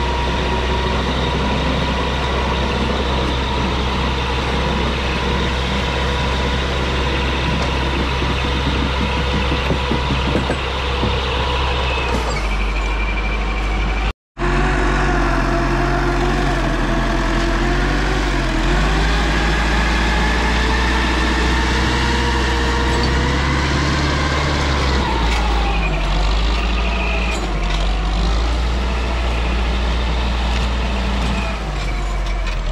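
LKT 81 Turbo skidder's diesel engine running steadily under load while it drags a bundle of oak logs. There is a short break about halfway through, after which the engine note shifts and rises and falls slightly.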